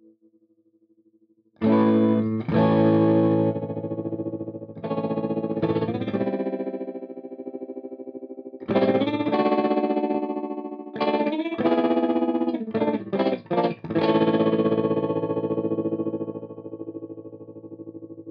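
Electric guitar chords played through the Spaceman Effects Voyager I optical tremolo pedal, the volume pulsing rapidly. The chords start about a second and a half in, pause for a few seconds midway, come back as a run of short stabs, and end on a chord left to ring.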